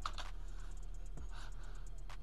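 Computer keyboard keystrokes: a few quick clacks near the start, then a couple of scattered clicks, over a steady low electrical hum.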